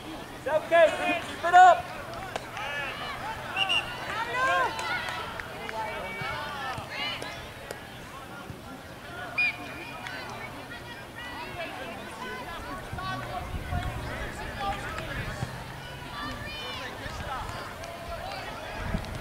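Voices shouting and calling out across an outdoor soccer field, loudest in short bursts during the first few seconds, with scattered background chatter after that.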